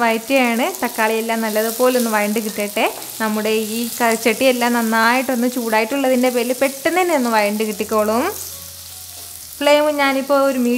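Tomatoes, curry leaves and shallots sizzling in oil in a clay pot as a spatula stirs them. Over it runs a louder, wavering pitched voice-like sound that drops out for about a second a little after eight seconds in.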